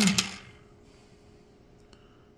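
The tail of a man's word at the very start, then near silence: faint room tone with a faint steady hum.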